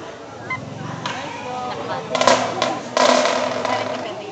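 Marching snare drum played with sticks: about two seconds in, two short rolls, then a longer, louder roll from about three seconds as the solo gets under way.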